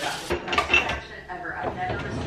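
Dishes and cutlery clinking and knocking as a dishwasher is unloaded, a few short sharp clatters in quick succession.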